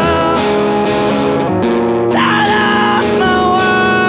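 Live rock band music led by electric guitar, playing held chords with some sliding, wavering notes over them.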